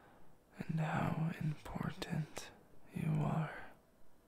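Only speech: a man's soft, half-whispered voice in two short phrases, with a pause between them.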